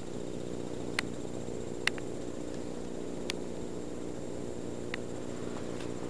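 A steady low hum made of several held tones, with a few faint clicks scattered through it.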